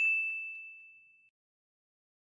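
A single high ding, like a struck chime, ringing on one clear note and fading away over about a second: the sound logo that goes with the closing card.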